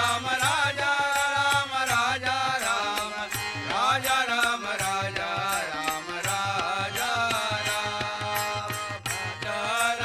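Group devotional singing (bhajan) in Indian style: several voices sing a gliding melody together, accompanied by steady tabla strokes and the held tones of a harmonium.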